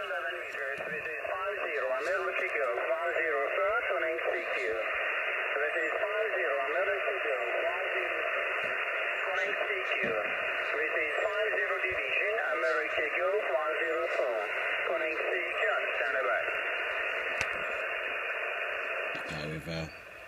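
Single-sideband voice traffic on the 11-metre band at 27.540 MHz, received on an Icom IC-706MKIIG transceiver and played through its speaker: narrow, tinny speech over a steady hiss of static. It cuts off about a second before the end.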